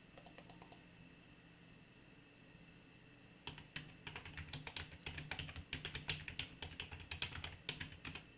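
Typing on a computer keyboard: a few light keystrokes at first, then about three and a half seconds in a fast, continuous run of keystrokes that stops near the end.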